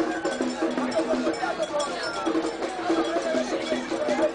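Struck metal percussion, like a cowbell or iron bell, clanking in a repeated rhythm over the voices of a crowd calling and chanting.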